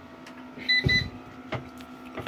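Hybrid solar inverter giving two short high beeps about a quarter second apart, with a dull knock between them, over a steady low hum. It is warning that the solar panel input, running without a battery, has dropped too low to supply any load.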